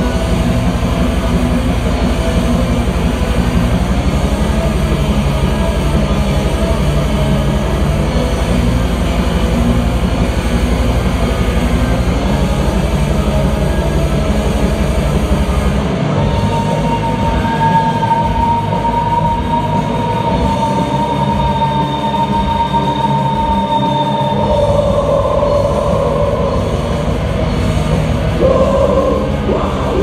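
Black metal band playing live at full volume: distorted electric guitars and bass over fast drumming. About halfway through, the low drums drop out for several seconds while a long high note is held, then the full band comes back in.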